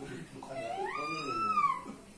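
A woman's high-pitched wail of pain, one drawn-out cry that rises and then falls in pitch, as she reacts to pressure-point treatment on her legs.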